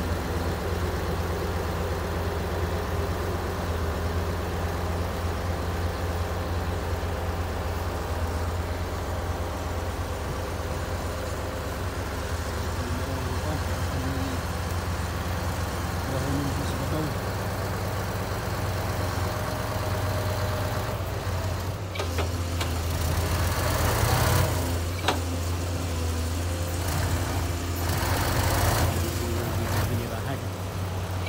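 Heavy diesel engine of a truck or backhoe running steadily at low revs, with louder, rougher stretches of revving and noise twice near the end.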